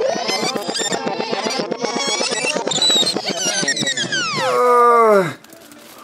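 Edited-in cartoon transition sound effect: a rapid, high-pitched fluttering warble for about four seconds that then slides steeply down in pitch and stops suddenly about a second later.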